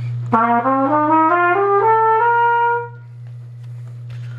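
A brass instrument plays an ascending B-flat major scale, one octave in quick even steps, holding the top note. A steady low hum runs underneath.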